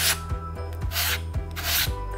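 Sandpaper rubbed over the tip of a foam glider wing in a few short strokes, bevelling the joint at an angle so the raised wing tip sits flush for gluing. Background music runs underneath.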